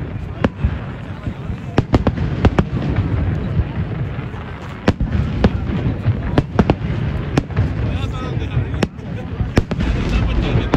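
Aerial fireworks shells bursting: about a dozen sharp bangs at irregular intervals over a continuous low rumble.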